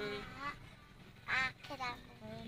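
Two short bursts of a person's voice with no clear words: one at the start and one past the middle.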